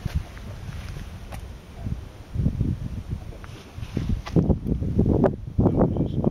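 Wind buffeting the microphone in irregular low gusts, growing stronger and more frequent from about halfway through.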